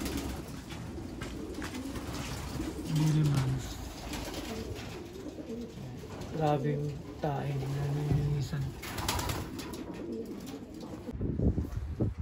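Racing pigeons cooing in a loft: several low coos a few seconds apart, the longest lasting about a second.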